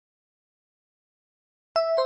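Silence, then near the end a bright two-note electronic chime rings out, the second note lower: the quiz's correct-answer sound as the right answer is marked.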